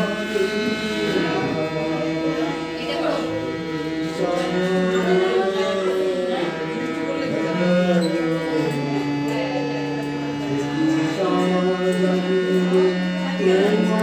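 Harmonium playing long held notes that step to a new pitch every few seconds, with voices singing a devotional song over it.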